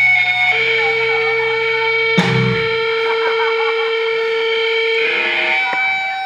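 Live rock band with distorted electric guitars holding long sustained notes. A single sharp hit comes about two seconds in, after which the low end drops away and the guitars ring on.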